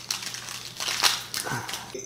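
Foil Pokémon booster pack wrapper crinkling and crackling as it is torn open by hand, a run of rustles loudest about halfway through.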